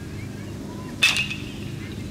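A single sharp metallic ping about a second in, ringing briefly before it fades, as from an aluminium bat striking a baseball.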